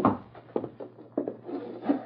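Radio-drama sound effects of people going indoors: a sudden thump at the start, then a few uneven footsteps and scuffs on wooden boards.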